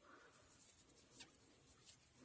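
Near silence, with the faint rustle of a crochet hook and yarn as chain stitches are pulled through, and two small soft ticks, one about a second in and one near the end.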